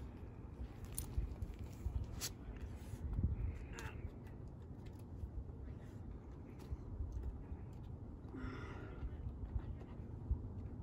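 A climber breathing hard, with forceful exhalations about three and a half seconds in and again near the end, while pulling through moves on a boulder. A few sharp clicks and scuffs of hands and shoes on the rock sound over a steady low rumble.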